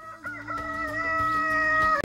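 A rooster crowing: one long, steady crow that begins just after a moment of silence.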